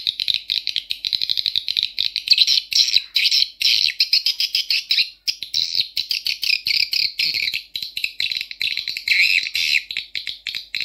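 Recorded swiftlet calls played through Audax AX-61 tweeters: a fast, dense stream of high chirping and twittering with brief gaps.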